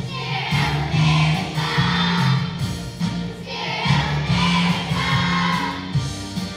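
Children's choir singing with an instrumental accompaniment that holds steady low notes underneath.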